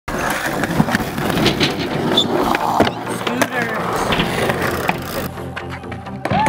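Hard wheels rolling and clacking on concrete and skatepark ramps, with sharp knocks throughout and voices in the background. About five seconds in, background music comes in.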